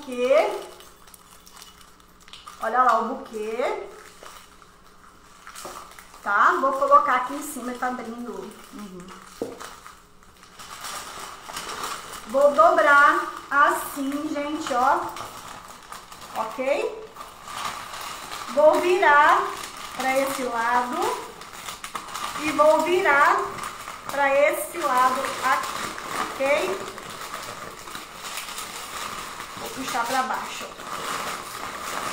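A voice talking in short phrases with pauses between them, with a faint steady tone in the background from about ten seconds in.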